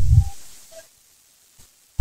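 A pause in a telephone conversation: a short low thud that fades within about half a second, then near silence.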